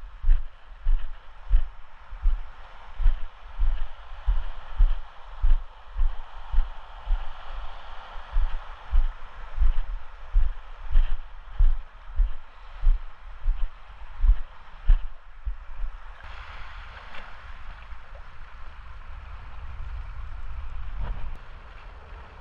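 Footsteps on a rock shelf, heavy thumps about twice a second picked up through a body-worn camera, over the wash of water at the rocks' edge. The steps stop about sixteen seconds in, leaving the water and a low rumble.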